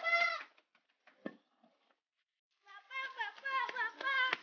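A young girl crying and wailing "ampun pa" (forgive me, father); the wail breaks off about half a second in. After a short quiet she starts wailing "bapa, bapa" in a high, wavering voice, with a few sharp taps.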